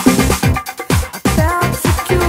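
Dance music from a DJ mix: a steady kick drum about twice a second under a busy beat, with a pitched melodic line coming in near the end.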